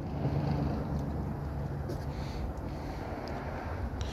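Low, steady rumble of a car engine running, with a low hum that is a little louder in the first second or two.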